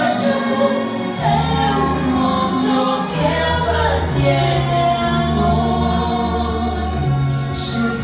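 A duet sung by a young man and a young woman into handheld microphones, with held notes over musical accompaniment; a low bass line comes in about a second in.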